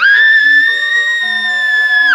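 A girl's long, high-pitched scream from an animatronic Halloween tug-of-war clown prop's sound track. It is one loud held note that rises slightly, over faint background music.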